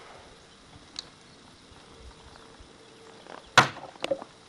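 A Kershaw Tension folding knife's blade slashing into a plastic two-liter bottle: one sharp whack about three and a half seconds in. A faint tick comes about a second in.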